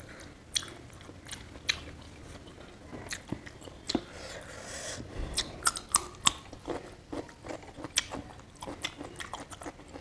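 Close-up mouth sounds of eating: chewing with frequent sharp wet clicks, and crisp crunching bites of raw cucumber, loudest about halfway through.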